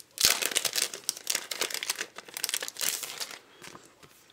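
Thin sticker-kit packaging crinkling and rustling as it is pulled open by hand, a dense run of crackles that dies away about three and a half seconds in.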